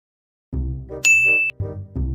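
A bright bell-like 'ding' sound effect about a second in, ringing steadily for about half a second and then cut off sharply, marking the on-screen bite count ticking up. Low-pitched background music notes play under it.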